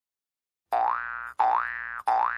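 Comic cartoon sound effect: a pitched tone that slides up and holds, played twice in quick succession starting about two-thirds of a second in, each lasting a little over half a second.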